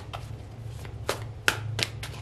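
A tarot deck being shuffled by hand: four sharp card snaps, the loudest about a second and a half in, over a steady low hum.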